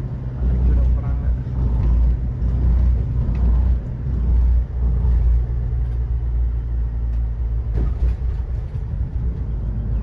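Steady low rumble of engine and road noise inside a passenger van's cabin while it drives at speed, with one short knock about three-quarters of the way through.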